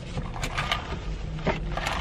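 Low steady hum of a car cabin with a few faint, scattered clicks.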